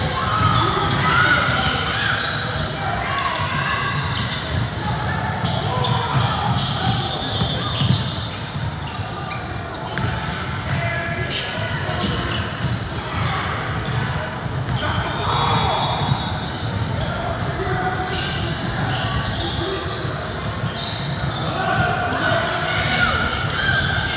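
A basketball being dribbled and bouncing on a gym court during play, with indistinct shouts from players and onlookers, echoing in a large hall.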